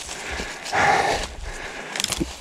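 A person breathing hard, with one louder breath about a second in, over rustling of dry branches and leaves being handled.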